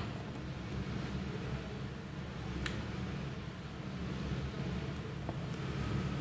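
Steady low background hum with a single faint click about two and a half seconds in.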